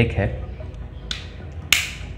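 A brief rustle of plastic handling about a second in, then a single sharp click near the end: the magnetic foam windscreen snapping onto the front mic of a GoPro Media Mod.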